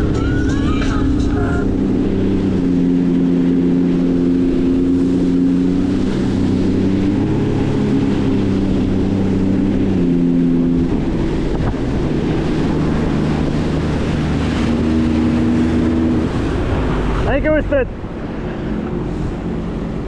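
Sea-Doo RXT-X 300 personal watercraft running at speed. Its supercharged Rotax three-cylinder engine drones steadily, with its pitch shifting in steps as the throttle changes, over the rush of water and wind.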